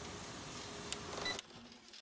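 Steady hiss of a spray can being sprayed, with a couple of faint clicks, cutting off suddenly about one and a half seconds in.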